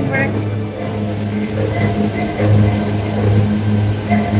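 A steady low hum with faint, indistinct speech over it.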